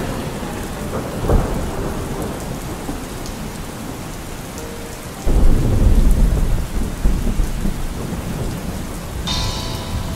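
Steady rain with thunder; a low rumble of thunder sets in suddenly about five seconds in and rolls on. A brief pitched sound comes near the end.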